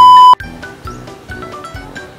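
A loud, steady 1 kHz test-tone beep of a colour-bars transition cuts off abruptly about a third of a second in. Light background music with short plucked notes follows.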